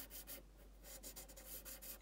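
Pencil scratching faintly on paper in short strokes while drawing a rectangular glasses frame.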